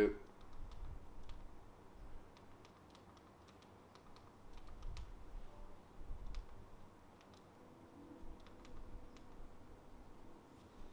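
Faint, scattered button clicks from an Amazon Firestick remote as it steps through the on-screen menus, with a little low handling rumble underneath.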